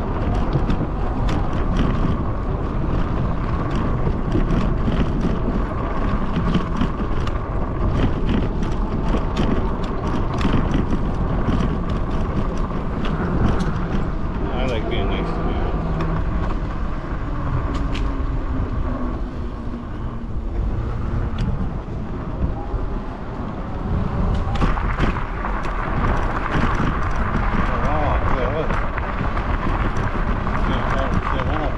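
Rad Runner Plus electric bike riding over a wooden boardwalk: a steady low rumble from the tyres, with many quick clicks as they cross the plank joints.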